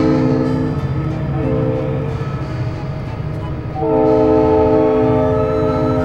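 Background music: sustained chords that change about a second and a half in and again near four seconds, over a steady low pulse.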